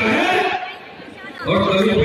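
A man's speech through a microphone, breaking off in a short pause in the middle, with crowd chatter underneath.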